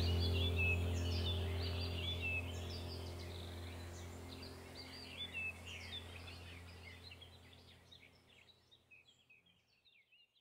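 Small birds chirping and singing over a low, steady hum. The whole sound fades out gradually to silence near the end.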